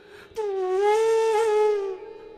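Bansuri (bamboo transverse flute) playing in Raag Des. After a brief breath pause it enters on one long held note with a breathy tone, dipping slightly and then rising, with a small ornament, and it tapers off near the end.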